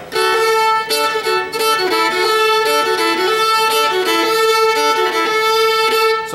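Fiddle bowing a double stop: one string is held steady throughout while the note on the string below it changes several times. He is approaching an open string from a note below and doubling it up.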